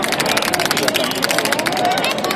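Marching pipe band drums beating a fast, even rhythm of sharp strokes, about ten a second, over the chatter of the crowd.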